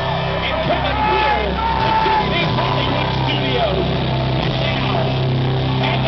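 Live rock band playing through a loud PA: held bass notes that change every second or two under a sliding melodic line, with voices in the crowd close by.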